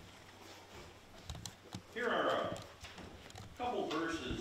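Faint knocks and handling sounds, then a person speaking, starting about halfway through and again near the end.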